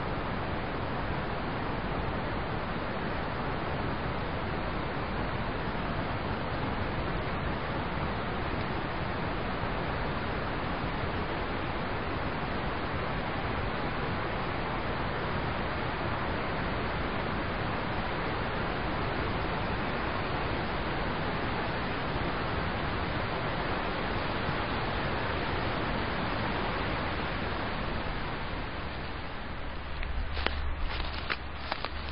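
Steady, even rush of flowing river water, with no breaks.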